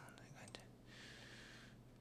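Near silence: room tone, with a faint click about half a second in and a faint soft hiss lasting about a second in the middle.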